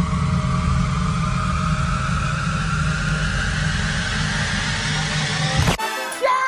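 Loud, steady low rumbling drone with a higher tone slowly rising over it, a dramatic film-trailer sound effect. It cuts off suddenly near the end.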